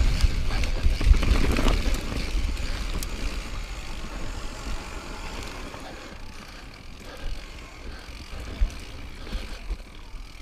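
Mountain bike rolling down a loose dirt trail: tyre rumble and wind buffeting on the microphone, loudest in the first two seconds and then easing off. Two sharp knocks from the bike, one about a second in and one near the end.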